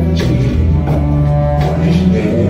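Live rock band playing an instrumental passage: bowed cello holding low notes over electric guitar and a drum kit, with a drum hit about every three-quarters of a second.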